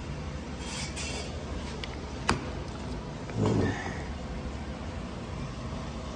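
Handling noises as a chainsaw cylinder is set and positioned on a wooden workbench: a sharp click about two seconds in and a short low knock a second later, over a steady low hum.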